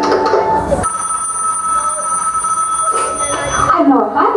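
A telephone ringing sound effect in the playback track: a steady high ringing tone that starts about a second in and holds for about three seconds before cutting off.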